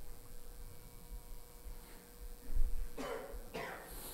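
A man coughs twice in quick succession near the end, just after a low thump, over a faint steady hum.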